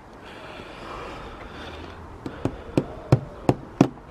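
Small garden trowels scraping through compost in a plastic tub, then a run of sharp taps, about three a second, of trowels knocking against the plastic tub and pot in the second half.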